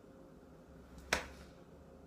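A single sharp click about a second in, over faint room tone.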